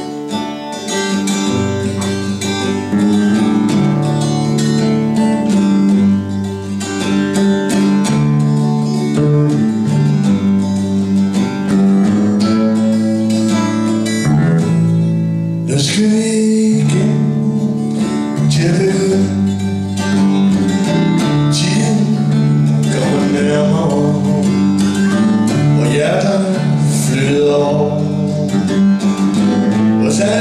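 A live duo of strummed acoustic guitar and electric bass playing a song's instrumental intro. A man's singing voice comes in about halfway through over the guitar and bass.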